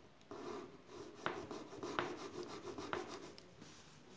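Pen and clear plastic ruler rubbing and scratching on a workbook page as a line is drawn and the ruler is slid to a new position, with three sharp ticks a little under a second apart.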